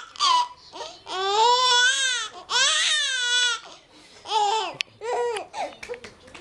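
A baby squealing with laughter: two long, high-pitched squeals, each about a second, then a few shorter ones near the end.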